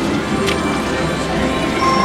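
Slot machine floor din: layered electronic machine tones and music with voices in the background, and one short click about half a second in.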